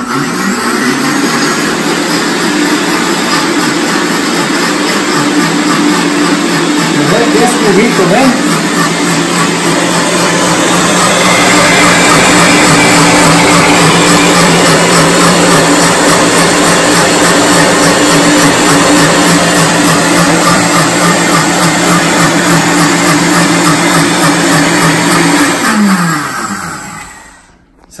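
Countertop blender running at full speed, grinding lime juice, habaneros and other chiles into the liquid for an aguachile. It runs steadily for about 26 seconds, then its pitch drops as the motor winds down and stops near the end.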